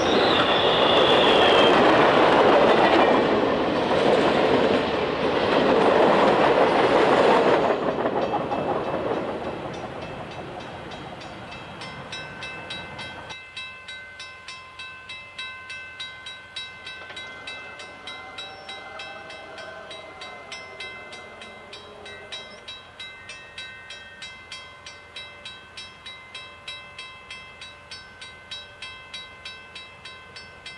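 Passenger train cars roll past close by with a loud, steady rumble that cuts off abruptly about eight seconds in. Then a level-crossing bell rings steadily, about three strokes a second, as a distant passenger train approaches, with a faint train horn around twenty seconds in.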